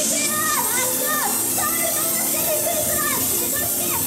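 Young girls singing live into handheld microphones over a pop backing track played through PA speakers; the high voice line swoops up and down in pitch.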